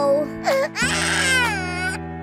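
A child-like crying wail: a short wavering cry about half a second in, then a long high wail from about a second in that slides down in pitch. It plays over background music with steady held notes.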